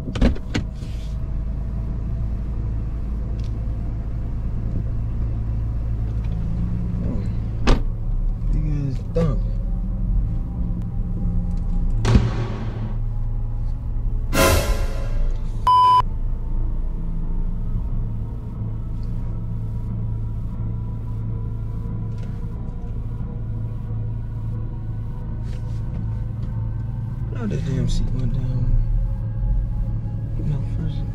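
Steady low rumble of a car's engine and road noise heard inside the cabin while driving, with a few sharp knocks and two whooshing sweeps around the middle. A short, steady beep sounds a little past halfway.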